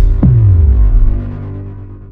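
Electronic logo intro sting: a deep bass boom with a quick falling sweep just after the start, then a low humming drone that fades away.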